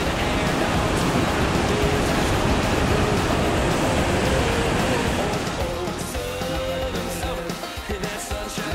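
Whitewater rushing over and below a low-head dam spillway: a steady, loud wash of water noise. About six seconds in, the water sound gives way to a pop-country song with guitar.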